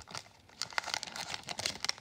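Foil wrapper of a Pokémon trading card game booster pack crinkling in the hands, a run of small irregular crackles as the pack is handled and its cards are taken out.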